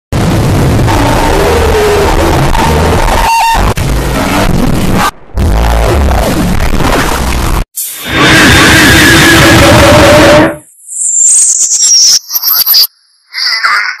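Logo jingle and sound-effect audio played backwards and heavily distorted. It is loud and harsh and noisy, broken by two brief dropouts and a short silence. A loud hiss follows, then in the last few seconds come high whistling glides and squeaks.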